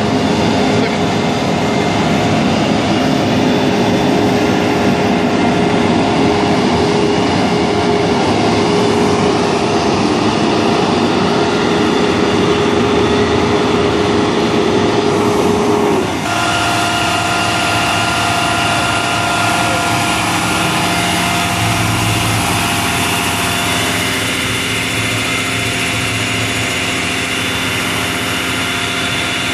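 Heavy rescue trucks' diesel engines idling close by: a loud, steady drone with a held hum. About halfway through the hum changes abruptly, giving way to a second engine's drone with several steady tones.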